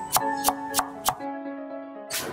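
Knife chopping vegetables on a thick wooden chopping block, about three quick strokes a second, stopping a little past a second in, over background music.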